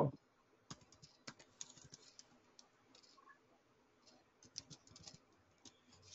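Faint computer keyboard keys clicking in short, irregular strokes as a web address is typed.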